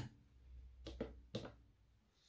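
Handling clicks as a wristwatch is set in the clamp of a timegrapher's microphone stand: one sharp click at the start, then a few fainter clicks about a second in, over a faint low hum.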